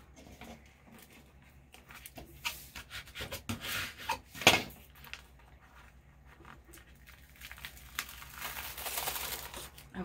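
Paper backing sheet rustling and being peeled away from an adhesive vinyl decal on transfer tape, with a sharp crackle about four and a half seconds in and a longer hissing peel near the end.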